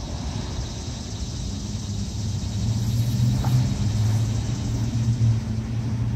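A CSX freight train's autorack cars rolling along the track: a steady low rumble with a hum that grows louder about halfway through.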